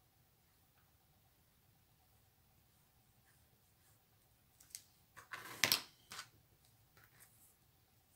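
Handling of craft materials on a cutting mat: near silence for about the first half, then a brief cluster of soft rustles and clicks, loudest a little past the middle, as a glue tube is put down and a ribbon is picked up.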